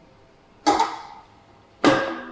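Two sharp metallic clanks about a second apart, each ringing briefly: iron weight plates knocking against a metal plate rack as a plate is handled.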